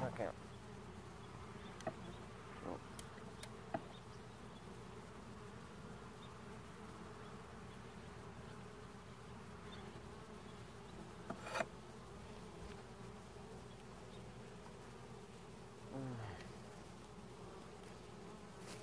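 Honeybees buzzing steadily around a wooden hive, with a few faint clicks early on and a sharper knock about eleven seconds in. Near the end a single bee flies close past, its hum falling in pitch.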